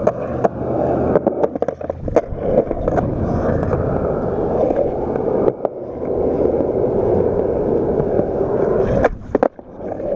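Skateboard wheels rolling over concrete, a steady rumble, with several sharp clacks of the board in the first few seconds. Near the end the rumble briefly drops away, broken by a couple of clacks.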